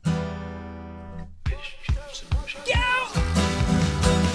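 Acoustic guitar: a hard-strummed chord rings out and fades for over a second, then rhythmic strumming strikes begin. A short wavering vocal line comes in, and the music thickens and grows louder near the end.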